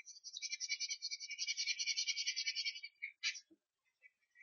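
Rapid back-and-forth strokes of a drawing tool scratching on paper, about eight strokes a second, as a page is shaded in, followed by a single short click near the end.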